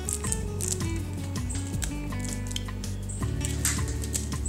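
Background music: a melody and bass line stepping from note to note, with light percussion ticks.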